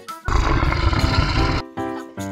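A loud, rough animal roar lasting about a second and a half, over background music.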